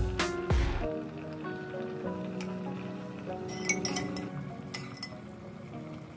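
Background music with a beat, and about two thirds of the way through a quick run of light clinks from a metal spoon against a clay casserole pot.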